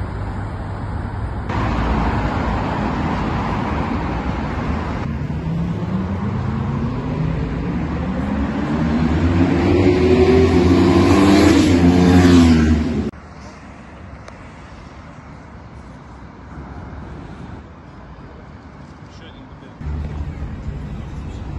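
City street traffic: road and engine noise, with a vehicle engine rising steadily in pitch and loudness through the middle as it speeds up past the microphone, then cutting off suddenly, leaving quieter street ambience.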